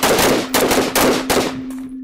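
Several carbines firing rapidly on a rifle range, shots from different shooters overlapping in a quick string that stops about a second and a half in.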